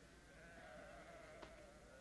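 A faint, wavering bleat of a farm animal in the background, lasting about a second and a half from about half a second in.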